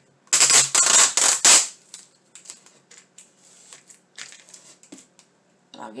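Clear packing tape pulled off its roll in one loud rasping screech of about a second and a half, followed by a few faint crackles.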